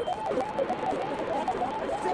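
Voices from the original footage, sped up with the timelapse into a rapid, high-pitched warbling chatter.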